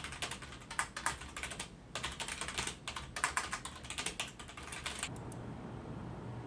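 Fast typing on a computer keyboard: a rapid run of key clicks, a brief pause about two seconds in, then a second run that stops about five seconds in.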